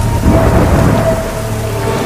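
Heavy rain with a low rumble of thunder.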